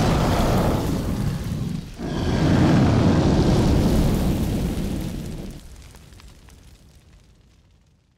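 Two explosion-and-fire sound effects: the first blast cuts off about two seconds in, and the second swells right after it and then fades slowly away over the last few seconds.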